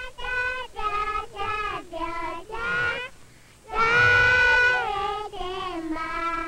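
Children singing a song in short sung phrases, with one long held note about four seconds in.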